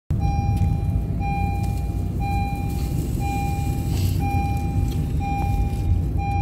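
Car driving, heard from inside the cabin: a steady engine and road rumble, with a short electronic warning beep repeating about once a second.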